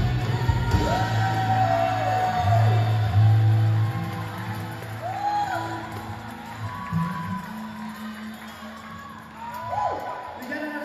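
Live worship band (drums, electric guitars, keyboard and singers) playing, with voices calling out in rising-and-falling swoops over a steady bass note. About four seconds in the playing drops back to quieter held chords, as at the close of a song.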